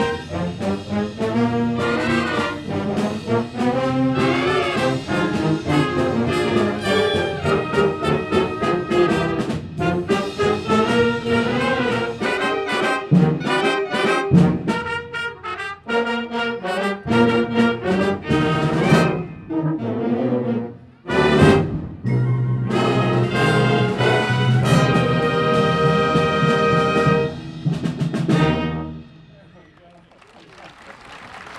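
Concert band of brass, woodwinds and percussion playing the closing bars of a piece. After a brief break there is a loud accented hit, then a long held final chord that is cut off a few seconds before the end and dies away.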